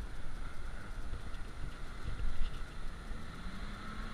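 A pickup truck's engine running at a distance as it drives along the trail, its pitch rising slightly near the end, under gusts of wind on the microphone.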